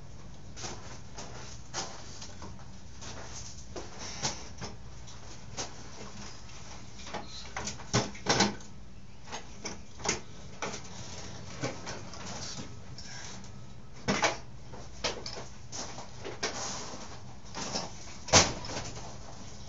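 Irregular metallic clanks and knocks of a two-stroke dirt bike engine and tools being worked loose and lifted out of its frame, loudest in a cluster a little before halfway and again about three quarters of the way through, over a steady low hum.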